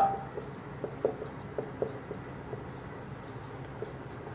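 Marker pen writing on a whiteboard: a run of short, faint, irregular strokes.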